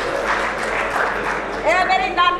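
Live theatre audience applauding. A voice starts speaking near the end.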